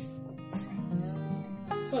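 Background music led by a guitar, with held notes and a few new notes struck.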